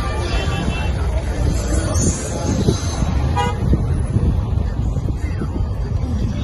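Road traffic under a steady low rumble, with a short vehicle horn toot about three and a half seconds in.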